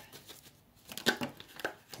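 Tarot cards being shuffled and drawn by hand: a few short, sharp card snaps and taps, the loudest a little after a second in.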